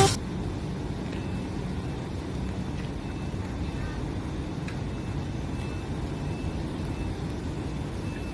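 Steady low outdoor background rumble, with a few faint, short high-pitched chirps scattered through it.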